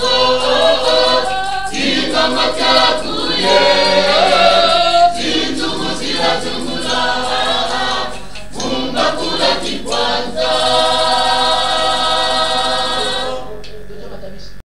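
A choir singing a Kikongo religious song, several voices in harmony. About ten seconds in they hold one long chord, which dies down near the end.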